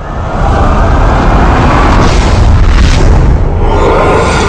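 Film trailer sound mix: loud, sustained low booming and rumbling effects with music underneath, swelling up just after the start and staying loud.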